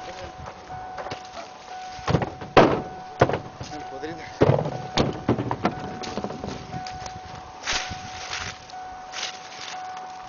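Ears of corn tossed into a pickup truck's metal bed, landing with a series of irregular thunks, with a faint steady tone underneath.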